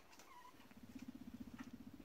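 Male guinea pig rumbling: a low, fast-pulsing purr that starts about half a second in, the vibrating call guinea pigs make in a dominance display over rank.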